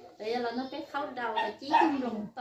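Speech: a person's voice talking in short bursts.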